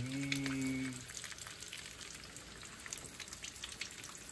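Eggs frying in a pan on a gas stove, crackling with quick, irregular little pops. A low hum opens the first second.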